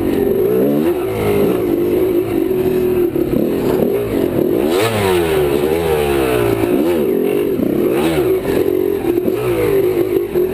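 Dirt bike engine revving up and down in quick swings as the bike climbs a rough trail, with clatter of the bike over rocks about five and eight seconds in.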